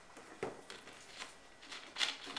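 Light knocks and clicks of a plastic soda bottle being set down on a table and its cap handled: a sharp knock about half a second in, another a little after a second.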